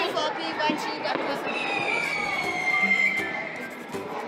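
A whistling firework giving one long high whistle that slowly falls in pitch for about two and a half seconds, over background music and voices.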